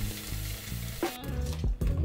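Hand spray bottle misting water: a steady hiss that cuts off just over a second in.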